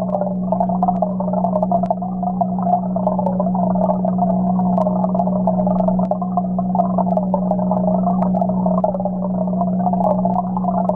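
Turtle tank's water pump or filter running, a steady low hum under a continuous burbling of moving water, heard through a submerged camera that muffles everything but the low and middle pitches.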